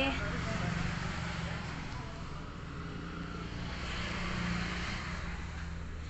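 Road traffic: a steady low hum with a rushing noise that swells twice, about a second in and again around four seconds in.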